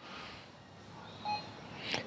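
Brother MFC-J6910DW printer's touchscreen giving one short beep about a second in, as the Reset option is tapped and the menu changes.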